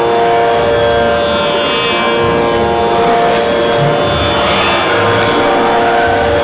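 A girl singing Carnatic music into a hand-held microphone, holding long, steady notes that step to a new pitch a couple of times.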